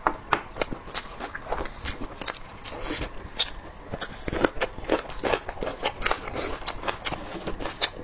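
Close-miked chewing and mouth sounds of someone eating braised spicy lamb shank meat, with sharp, irregular clicks several times a second.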